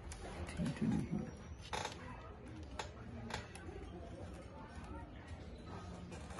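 A few sharp clicks from a screwdriver and scalpel prying at the edge of a MacBook Pro's aluminium bottom case, the loudest about two seconds in. A short low voice sound comes about a second in.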